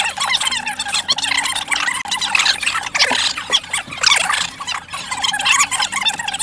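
A young teenager laughing nonstop, high-pitched and without a break.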